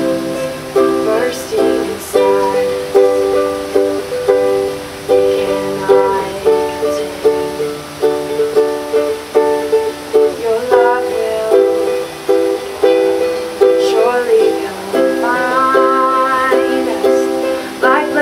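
Ukulele strumming chords in a steady rhythm.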